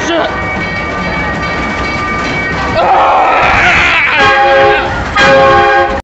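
Roller coaster car running along its track with a steady loud rumble and rattle. About three seconds in it gets louder with a harsh screech. Near the end come two held squealing tones of about a second each.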